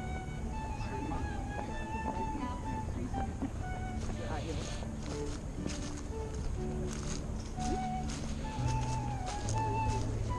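Live instrumental processional music: a slow melody of held notes over sustained low notes.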